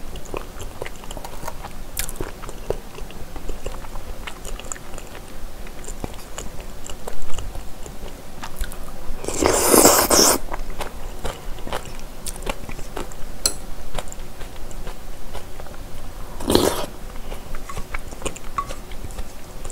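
Close-up eating sounds of boneless chicken feet in spicy broth: wet chewing and small mouth clicks, with a long slurp about nine seconds in and a shorter one near the end.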